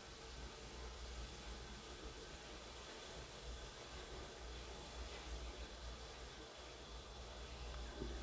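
Faint steady hiss of room tone, with no distinct sounds standing out.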